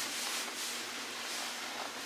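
Soft, continuous rustling of a Zpacks Classic 20°F down sleeping bag's shell fabric as the person inside shifts and draws his head down into the bag.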